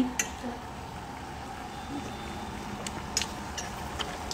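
Pan of vegetable avial simmering on a gas stove: a soft, steady hiss with a few light clicks, the loudest of them near the end.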